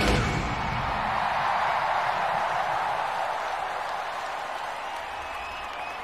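A final crash from the band right at the start, then a large arena crowd cheering and applauding, the noise slowly dying down.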